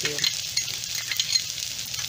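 Chopped ginger and green chillies sizzling in hot oil with fried onion and mustard and cumin seeds in a tawa. It is a steady frying hiss with small crackles.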